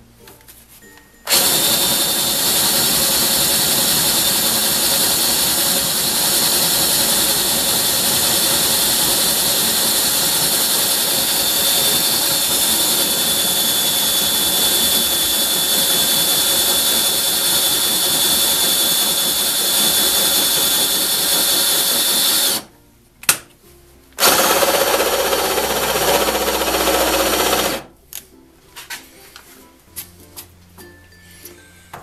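DeWalt 18V cordless drill boring into a steel plate, with a steady high whine. It runs continuously for about twenty seconds, stops, gives one short blip, then runs again for about three and a half seconds.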